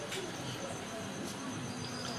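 Faint steady background noise with a thin, high, continuous tone between stretches of a man's talk.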